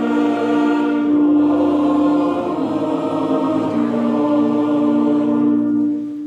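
A large standing crowd singing together slowly, in long held notes, like a choir.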